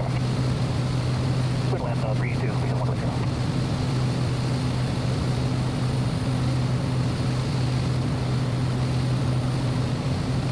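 Cessna 208B Grand Caravan's single turboprop engine and propeller running at a steady pitch, heard inside the cockpit as a loud, even low hum.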